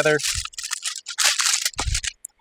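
Aluminium foil crinkling as it is folded and pressed down over a baking tray to seal a foil packet, with a short dull thump near the end.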